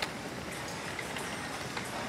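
Steady ambient noise of an airport terminal concourse, an even hiss with a faint click at the start and a few faint ticks.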